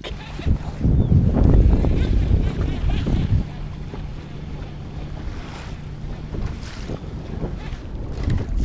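Wind buffeting the microphone in gusts, heaviest in the first three seconds, over choppy water slapping against a boat's hull. A faint steady low hum runs under it in the second half.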